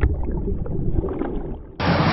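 A low, muffled rumbling noise with scattered clicks, then loud rock music starts suddenly near the end.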